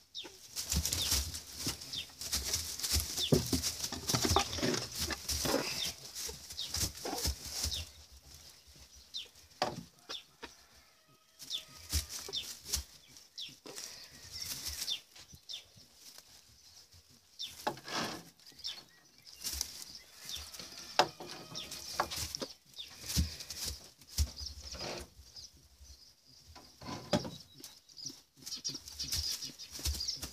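Close rustling and scuffling of rabbits moving in straw bedding as a buck tries to mount a doe, mixed with the phone rubbing against fur and hay. It comes in irregular spells and is quieter through the middle.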